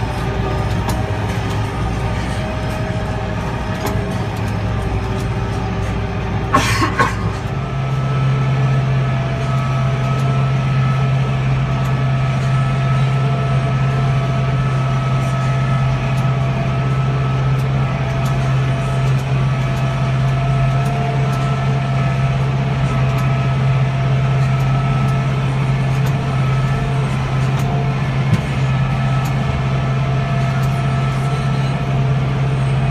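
Tractor engine running steadily while hauling a round hay bale. About seven seconds in there is a short noisy clatter, after which the engine hum is steadier and slightly louder.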